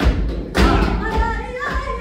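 Flamenco bulerías: a flamenco guitar playing with palmas handclaps, and heavy stamps of a dancer's footwork on the stage floor at the start and again about half a second in.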